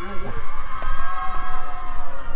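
A person's voice: a short spoken word, then a long held, slightly wavering high voice, over a low rumble.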